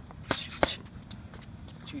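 Two punches from boxing gloves landing on focus mitts, sharp smacks about a third of a second apart early on.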